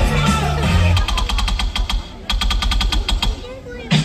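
Music over a stadium public-address system, then a rapid run of sharp clicks, about eight a second, lasting about two seconds.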